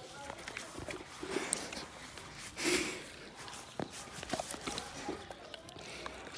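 Saint Bernard licking and mouthing a raw buffalo heart: irregular wet smacking and clicking mouth sounds, with a louder breathy puff about halfway through.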